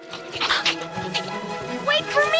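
Film score with held chords, over which a gorilla gives a short hooting cry about half a second in. A voice rises in pitch near the end.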